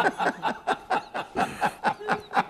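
People laughing: a run of short, rapid chuckles, about four or five a second.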